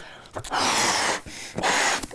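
A man blowing up a clear balloon by mouth: two long puffs of breath rushing into the balloon, the first about half a second in and the second near the end.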